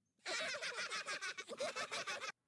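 High-pitched cartoon boys' voices laughing together in a rapid, unbroken string of laughs, starting about a quarter-second in.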